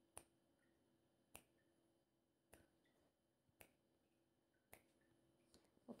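Faint, evenly spaced ticks about a second apart, six in all, over near silence: a countdown timer ticking off the seconds allowed to answer a quiz question.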